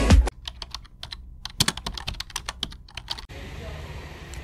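Dance music cuts off, followed by about three seconds of irregular quick clicks with a short pause about a second in. The clicks stop suddenly and give way to a faint steady background.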